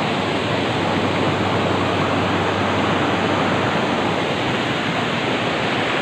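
Steady, even rushing of flowing water over rock, with no change in level throughout.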